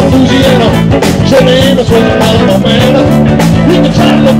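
Live country-rock band playing loud and steady through an instrumental passage: electric guitars, bass, drums and fiddle, with a wavering lead melody over the beat.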